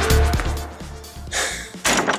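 Electronic dance backing music with a heavy beat, fading out over about the first second. It is followed by a short breathy noise about a second and a half in.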